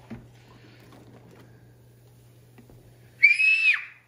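A young girl's high-pitched squeal, about half a second long, about three seconds in, dropping in pitch as it ends.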